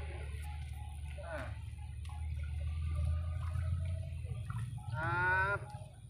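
A steady low rumble with faint, scattered voices, then about five seconds in a loud, drawn-out call in one voice, rising slightly in pitch and lasting under a second.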